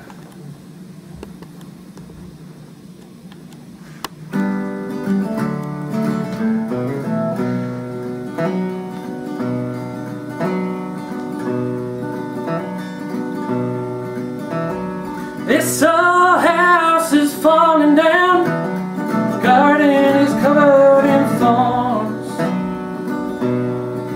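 Acoustic guitar playing the opening of a country song, starting about four seconds in after a quieter lead-in. A man's singing voice comes in over the guitar a little past the middle.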